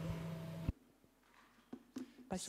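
Quiet room tone with a low steady electrical hum that cuts off abruptly under a second in, followed by near silence broken by a couple of faint clicks.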